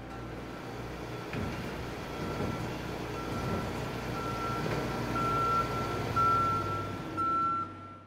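Vehicle reversing alarm beeping about once a second, growing louder, over a steady hum of street traffic.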